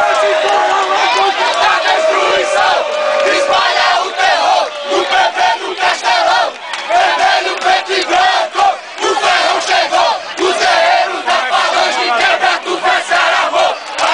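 A crowd of football fans in the stands shouting and cheering together in celebration of a goal, many voices at once with brief dips between the shouts.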